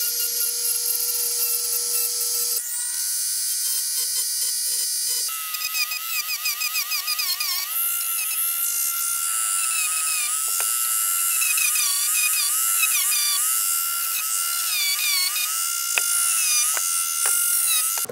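Dremel rotary tool whining at high speed while boring out plastic rivets. From about five seconds in, its pitch repeatedly dips and recovers as the bit bites into the plastic.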